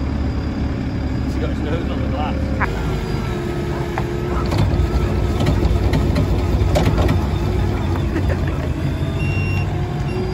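Diesel engine of a Merlo P27.6 Plus compact telehandler running steadily, with a faint whine over it. It grows a little louder about halfway through as the machine pulls away.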